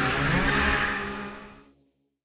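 Rally car engine revving, its pitch dipping and rising, then fading out to silence well before the end.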